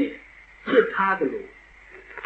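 Only speech: a man saying one short phrase in Burmese between pauses.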